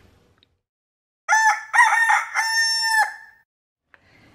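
A rooster crowing once, starting about a second in: a few short broken notes, then one long held note.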